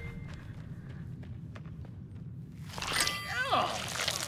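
Quiet forest foley with a few faint ticks and rustles, then near the end an animated character's voice lets out a loud cry that falls in pitch.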